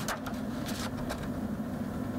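A woman's long, steady hum held on one pitch, a drawn-out "mmm" filler between sentences, with a few faint clicks over it.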